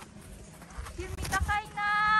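A few short knocks, like steps in snow, then a young child's high-pitched squeal: a couple of quick rising notes and then one held note of about half a second near the end, the loudest sound here.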